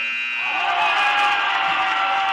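Gym scoreboard buzzer sounding a long, steady horn at the end of the quarter, with crowd cheering rising over it about half a second in.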